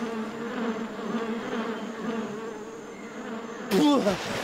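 Steady insect-like buzzing, as of bees, wavering slightly in pitch. Near the end a loud splash as a man bursts up out of the water with a gasping cry.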